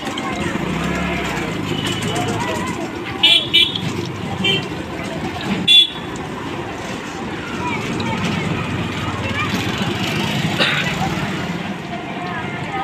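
Busy street ambience of background voices and traffic, with several short vehicle-horn toots between about three and six seconds in.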